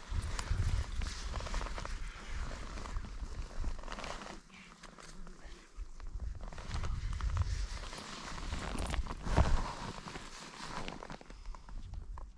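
Paragliding harness, risers and lines rustling and knocking as the pilot handles them and shifts his feet, over a steady low rumble of wind on the harness-mounted microphone. The loudest knock comes a little past the middle.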